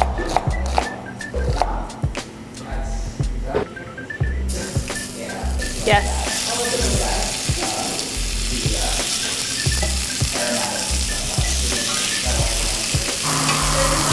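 A chef's knife slicing red onion on a cutting board, a run of quick knocks; about four and a half seconds in, a steady sizzle begins as strips of seasoned meat fry in a hot cast-iron skillet, stirred with a spatula.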